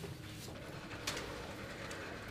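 Soft rustling of paper sheets and plastic folders handled at classroom desks: two brief rustles over a faint low room hum.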